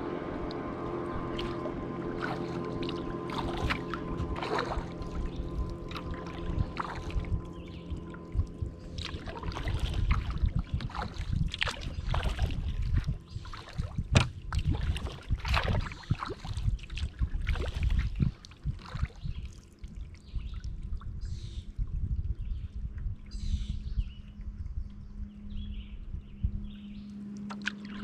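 Kayak paddle strokes: the blades dipping and splashing water in an irregular series, most busily in the middle. Steady sustained tones of background music sound underneath.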